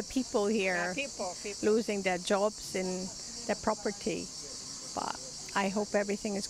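A steady, high-pitched chorus of cicadas runs under a woman's speech.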